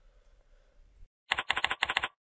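Computer keyboard keys clicking: a quick run of about ten keystrokes in under a second, starting a little past the middle after a near-silent pause.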